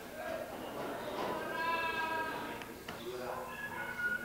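Indistinct voices of a group of people, with one high, drawn-out vocal call about a second and a half in.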